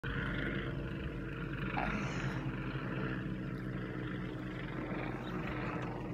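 Airplane flying overhead, a steady drone with a low rumble.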